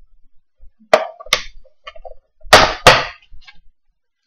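A brownie package being handled on a desk: two sharp knocks about a second in, then two louder knocks close together about two and a half seconds in.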